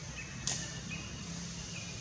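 A single sharp snap or click about half a second in, over a steady high-pitched outdoor hiss, with a few faint short thin whistle-like calls.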